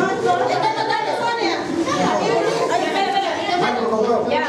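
Several people talking over one another: overlapping chatter in Spanish with no single voice standing out.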